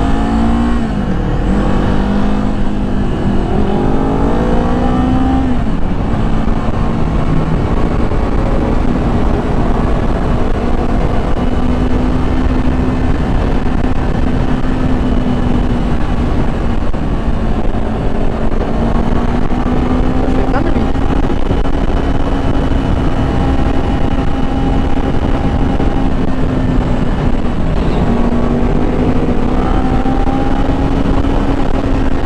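Kawasaki Z400 parallel-twin engine under way at road speed, rising in pitch over the first five seconds as it accelerates, then holding a steady cruise. Heavy wind rush over the microphone.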